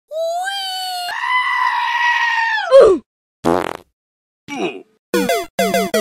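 Meme sound-effect clips: a long pitched wailing cry that steps up in pitch about a second in and slides down at the end, after about three seconds. Two short bursts follow, then a rapid string of about five falling-pitch electronic tones as one fighter's health bar empties.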